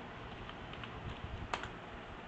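Typing on a computer keyboard: a few light keystrokes, with one louder click about a second and a half in.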